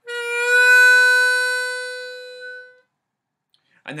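A-key diatonic harmonica playing one 4-hole draw note that starts bent flat and slides up to pitch (a scoop, the bend released), then is held for about two and a half seconds and fades out.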